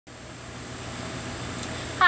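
Steady low hum and hiss of background noise, growing slightly louder.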